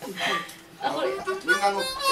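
Harmonica blown briefly: a single held note of about a second in the second half.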